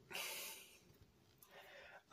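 A man's short, breathy exhale lasting about half a second.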